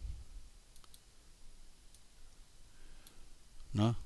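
A few faint, separate clicks of a computer mouse as a node is picked and placed in software.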